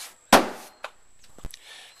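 Fiberglass boat shell struck by hand: a sharp, loud knock near the start that rings briefly, then a duller thump about a second later.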